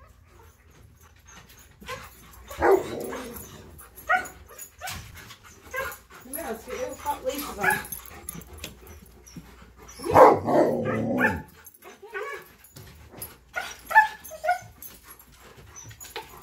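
A husky and a malamute whining, yipping and barking in excitement, in several separate bursts, the loudest about ten seconds in.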